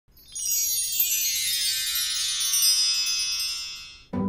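Shimmering, bell-like chime sound effect for an intro: many high ringing tones slide slowly downward together, with a single click about a second in, fading out near the end.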